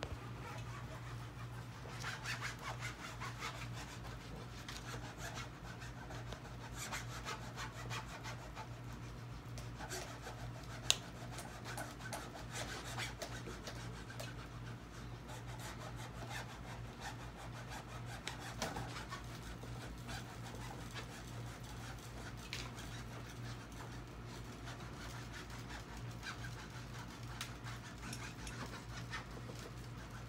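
A hand applicator tool rubbed back and forth over screen-printing mesh along the edge of an adhesive-coated aluminum frame, a continuous irregular scrubbing as the mesh is worked down onto the adhesive. A steady low hum runs underneath, and there is one sharp click about eleven seconds in.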